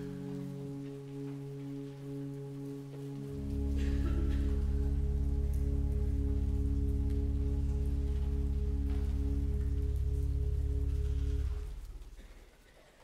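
Church organ holding sustained chords. About three seconds in, deep pedal bass notes join and the full chord is held for about eight seconds before it stops just before the end, like the long closing chord of a psalm accompaniment.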